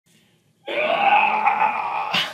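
A man's long excited yell of celebration. It starts about half a second in and holds at a steady pitch.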